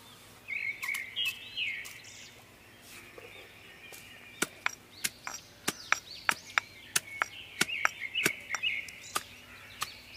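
Stone pestle pounding garlic cloves in a small stone mortar: a steady run of sharp knocks, about three a second, starting about four seconds in.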